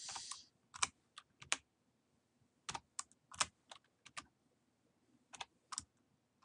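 Computer keyboard keystrokes: scattered single clicks and small clusters of clicks a second or so apart, as grade values are entered with keyboard shortcuts (copy, paste and fill-down).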